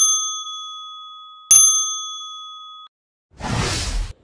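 Two bright electronic ding chimes about a second and a half apart, each ringing with several high partials and fading, then cut off suddenly; a short whoosh follows near the end.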